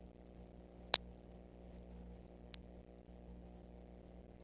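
Steady low electrical hum on the nest-cam microphone, broken by two sharp clicks, a loud one about a second in and a softer one about a second and a half later.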